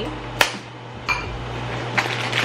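Kitchenware being handled on a counter: one sharp clink about half a second in, then a fainter brief sound, over a steady low hum.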